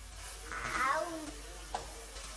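A toddler's short, high-pitched vocal sound about half a second in, falling in pitch at its end, over the faint steady hiss of food cooking on the stove. A small click follows near the end.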